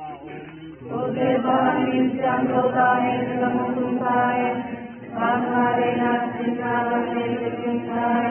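A large crowd singing together in unison with a few voices leading. The song comes in two long phrases, with a brief break about five seconds in.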